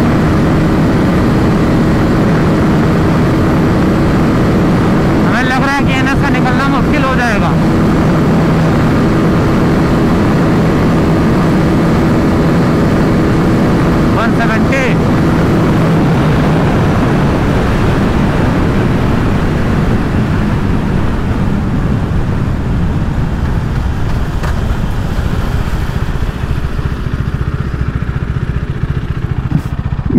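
KTM RC 390's single-cylinder engine running hard at a steady high speed, mixed with heavy wind rush on the microphone; past the middle the engine note thins and eases off as the bike slows.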